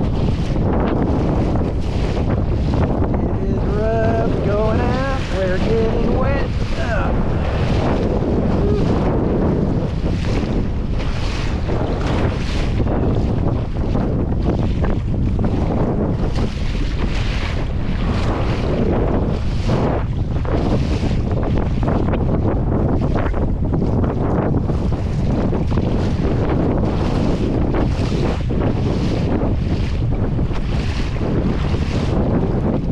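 Strong wind buffeting the camera microphone, with waves slapping and splashing against a plastic fishing kayak's hull about once a second as it moves through choppy water. A few short wavering pitched sounds come in about four to seven seconds in.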